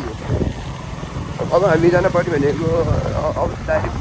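A person's voice speaking, mostly in the second half, over the steady low rumble of a running vehicle.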